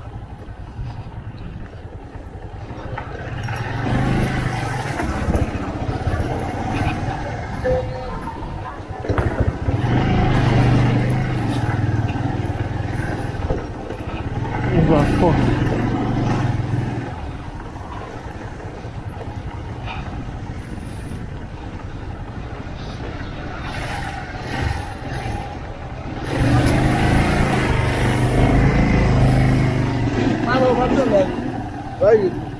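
Motorcycle engine running as the bike rides slowly over a dirt street. It picks up three times with the throttle, about three seconds in, about ten seconds in and again near the end, and runs quieter in between.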